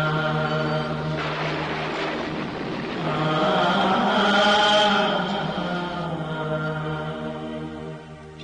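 Voices chanting over a steady low drone, growing louder through the middle and fading toward the end.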